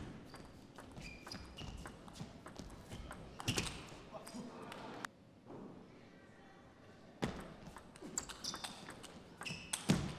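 A table tennis ball clicking sharply off bats and the table in rallies, with a quieter lull midway.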